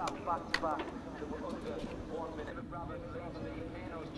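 Indistinct voices talking over a steady low hum, with a sharp click about half a second in.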